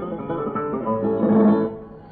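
Flamenco guitar playing a falseta interlude of a fandango, heard on an old record with a dull, narrow sound. The guitar dies away near the end.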